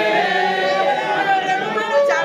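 Church congregation singing together, many voices at once.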